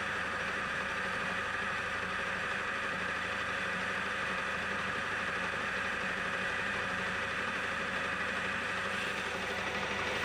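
Metal lathe running steadily as a turning tool takes a finishing pass along a metal tube's outer diameter: an even machine hum with a higher whine over it.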